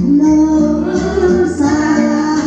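A woman singing held notes over a steady musical accompaniment.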